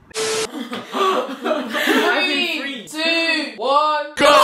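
A short burst of hiss, then a person's wordless, laughing voice in drawn-out sounds that swoop up and down in pitch.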